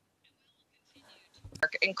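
Near silence in a pause in a woman's speech over a remote headset-microphone link, then her speech resumes about one and a half seconds in.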